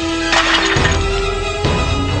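Film trailer music with held low notes, and a noisy crash that breaks in about a third of a second in and lasts about half a second.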